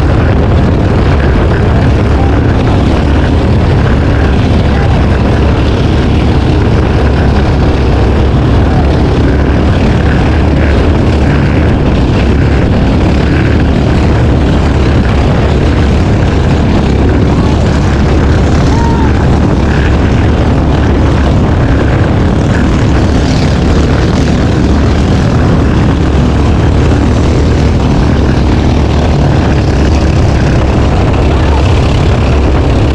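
A small outrigger racing boat running flat out at steady speed: its engine drones under heavy wind buffeting on the microphone and the rush of spray off the hull.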